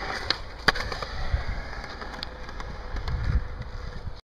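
Skateboard wheels rolling on smooth concrete, a steady low rumble, with one sharp clack a little under a second in and a few lighter ticks.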